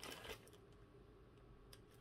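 Near silence, with a few faint rustles and clicks in the first half second from a padded bubble mailer being cut open, and a couple of faint ticks near the end.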